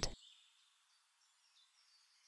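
Near silence in a pause of a spoken guided meditation: the voice's last word trails off at the very start, leaving only a few very faint, high chirps.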